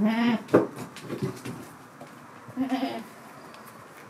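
Alpine goat bleating twice: two short, wavering bleats about two and a half seconds apart. A single sharp knock comes just after the first bleat.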